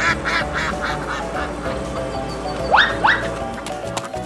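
Duck quacking sound effect: a quick run of about ten quacks that fade away, over background music. Near the end come two short rising calls.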